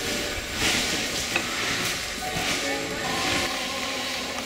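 Indistinct chatter of several people over a steady hiss; no engine is running.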